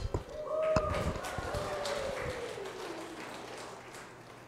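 Church hall going quiet right after a drum-backed hymn ends. A faint drawn-out voice slowly falls in pitch, with a few light knocks near the start, and the whole sound fades away.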